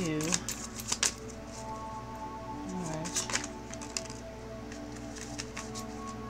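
A deck of large oracle cards being shuffled by hand, with quick runs of card snaps and clicks in the first second or so and again around three seconds in, over steady background music.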